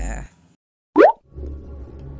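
A single short 'plop' sound effect about a second in: a quick pop whose pitch glides sharply upward, after the music cuts out to a moment of silence. A low hum follows.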